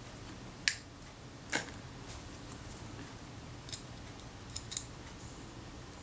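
Light clicks and taps from handling a brass lens helicoid and a wooden applicator stick while greasing the focusing thread: two sharper clicks under a second in and about a second later, then a few fainter ticks, over faint room hiss.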